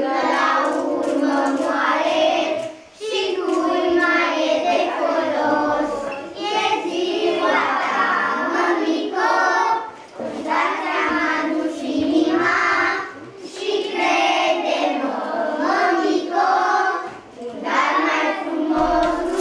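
A group of young children singing a song together, in phrases broken by brief pauses.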